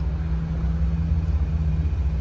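Vehicle engine idling: a steady low rumble with a constant hum over it.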